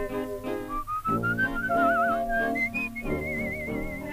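A whistled melody over dance-orchestra accompaniment on an early-1930s 78 rpm record. The whistle glides slowly upward, then wavers in trills on its held higher notes.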